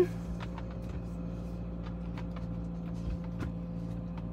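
Car engine idling, a steady low hum heard from inside the cabin, with a few faint ticks over it.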